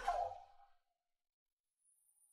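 A woman's frightened voice trails off in the first half second, then dead silence.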